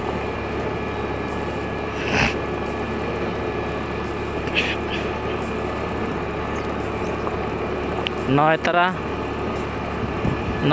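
Motorcycle engine running steadily while riding, with continuous road noise; one short spoken word near the end.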